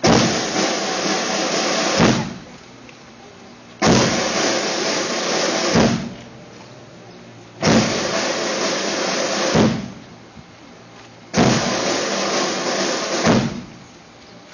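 Military band drum rolls: four rolls of about two seconds each, evenly spaced, each opening and closing with an accented stroke.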